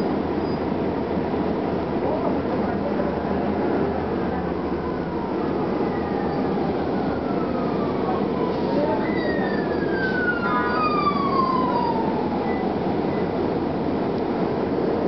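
Inside a 1999 Gillig Phantom transit bus on the move: its Detroit Diesel Series 50 four-cylinder diesel and Allison B400R transmission run with a steady rumble and road noise. A drivetrain whine glides down in pitch twice, from about six seconds in and again from about nine seconds in.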